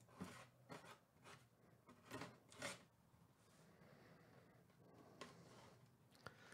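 Box cutter slitting the packing tape along the seam of a cardboard box: about five faint, short scraping strokes in the first three seconds.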